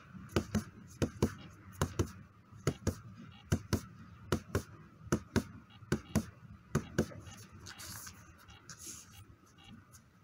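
Punches landing on a handheld strike pad in quick one-two pairs, about nine pairs a little under a second apart, stopping about seven seconds in.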